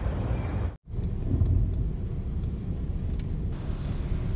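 Steady low rumble of a car driving, heard from inside the cabin. It cuts out completely for a moment a little under a second in.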